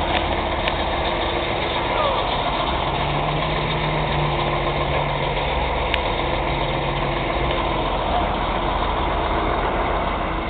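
A large truck's engine idling steadily.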